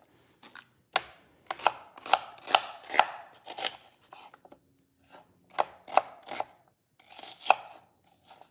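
Kitchen knife chopping a yellow onion on a wooden cutting board: about a dozen irregular knocks of the blade on the board, with a pause of about a second and a half in the middle.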